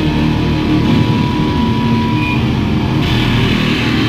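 A rock band playing live and loud, with distorted electric guitars through amplifiers and a dense, driving low end.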